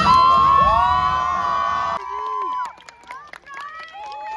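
A group of people cheering and whooping together, with many long, high shouts overlapping. About two seconds in it drops off suddenly to scattered whoops and a few sharp clicks.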